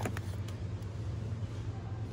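Steady low hum of supermarket background noise, with a few light clicks in the first half second from a plastic tray of rice pots being pulled from its shelf box.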